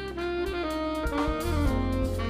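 Alto saxophone playing a short solo line of held and stepping notes over a live band's bass and drums.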